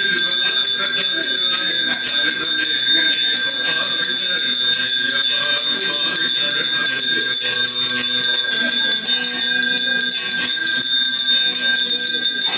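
Devotional temple music with a fast, even jingling rhythm from bells or a rattle and steady high ringing tones, with voices in the mix.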